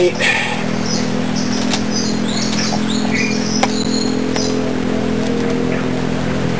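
A steady low hum made of several even tones runs throughout. Over it a bird gives a run of short, high chirps from about a second in until about four and a half seconds in, with a couple of faint clicks among them.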